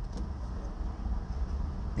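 Low, steady vehicle rumble heard from inside a parked car's cabin during a pause in speech.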